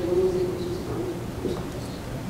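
A person's low voice, a single held tone lasting about a second that then fades, over faint murmur in a meeting room.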